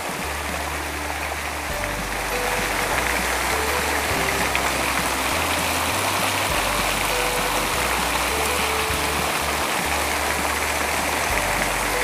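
Steady rush of water pouring in streams off the edge of an overhead glass canopy and splashing below, with background music's low bass notes changing every second or two underneath.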